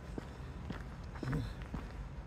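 Footsteps of a person walking on brick paving, a series of light taps.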